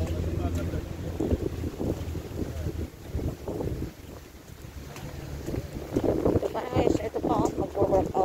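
Wind buffeting the phone's microphone over a steady low engine hum, which fades out about three seconds in and briefly returns. A person's voice is heard in the last two seconds.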